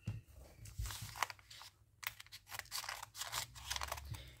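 Scissors snipping through the plastic wrapping of a magazine: a series of short, sharp cuts and crinkles, with a brief pause a little before the middle.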